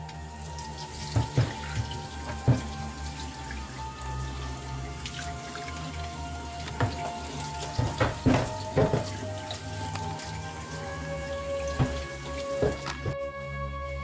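Kitchen tap running, its stream splashing onto a plastic cutting board in a stainless-steel sink, with several sharp knocks as the board is handled. The water stops about a second before the end, and background music plays throughout.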